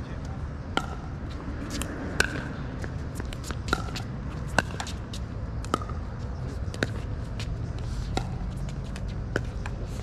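Pickleball rally: about nine sharp pops of paddles hitting the plastic ball, roughly one a second, over a steady low hum.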